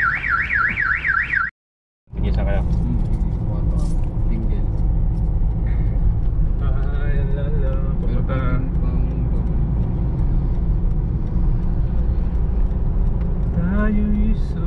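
A car alarm warbling, its tone sweeping rapidly up and down about four times a second, cut off about a second and a half in. After a short silence, the steady low engine and road rumble of a moving car heard from inside the cabin.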